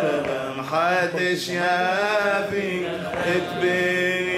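Solo male cantor singing a Judeo-Arabic piyyut in maqam Rast, drawing out ornamented, wavering melismas. A steady low note is held beneath the melody.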